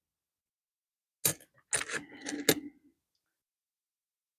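Pennies clicking and clinking as they are handled and set down: one sharp click about a second in, then a short cluster of clinks with a faint metallic ring.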